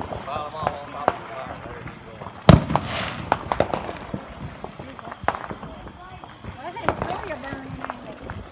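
Consumer fireworks going off: a sharp bang about two and a half seconds in, followed by a short burst of crackling, with scattered smaller pops through the rest.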